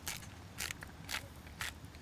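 Hand-twisted salt grinder milling salt, giving short crunchy grinding strokes about two a second.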